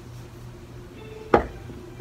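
A single sharp knock about a second and a half in, a hard object striking something, over a steady low hum.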